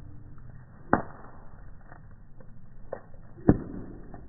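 Bonfire crackling, slowed down and lowered in pitch by 240 fps slow-motion playback: two loud, deep pops, about a second in and again near the end, among fainter scattered crackles over a low rumble.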